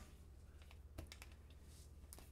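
Near silence with a few faint clicks and taps as a large poster board is handled, the clearest about a second in followed by a small cluster of lighter ticks.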